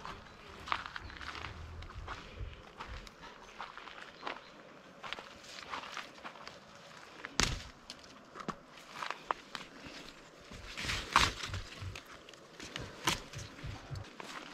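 Footsteps on dry garden soil, irregular and unhurried, as someone walks between rows of vegetable plants. There is one heavier thump about halfway through.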